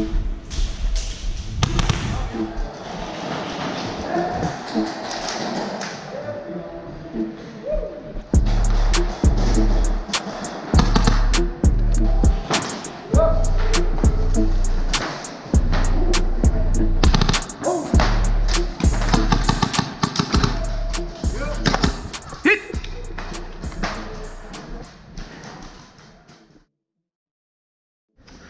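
Background music with a heavy, pulsing bass beat and sharp percussive hits, fading out at the very end.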